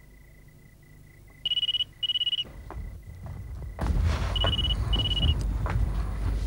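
Cordless phone handset ringing with an electronic trill: two short warbling bursts, a pause, then two more about three seconds later. A louder low rumble with scattered knocks comes in about four seconds in.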